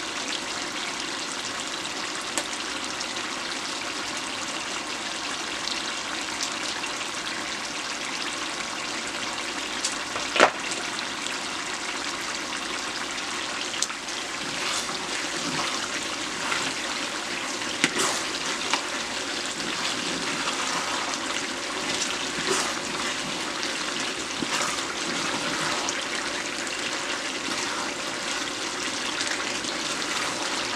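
Chopped eggplant, onion and tomato paste frying in oil in a metal pot, with a steady sizzle. A few sharp knocks of the wooden stirring spoon against the pot, the loudest about ten seconds in.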